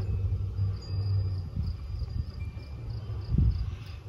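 Close-up handling noise of fingers twisting a twist-on F connector onto RG6 coaxial cable, the connector's inner threads biting into the cable jacket. There is a low steady hum underneath, and a single low bump about three and a half seconds in.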